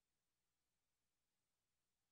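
Near silence: only a faint, even electronic noise floor.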